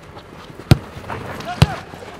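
Two sharp thuds of a football being kicked, about a second apart, with players' shouts in the background.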